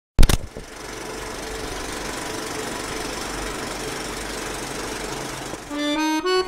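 Film projector sound effect: a sharp click, then a steady, rapid mechanical clatter of a running projector. A short tone comes in just before the end.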